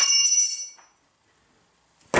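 A single sharp metallic clank right at the start that rings with several clear high tones and dies away within about a second, from the tire mount/demount bar knocking against metal on a motorcycle tire changing stand.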